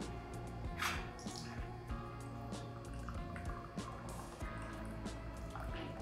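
Herbal tea pouring from a glass pitcher through its strainer lid into a glass mug, with splashing and dripping, over background music.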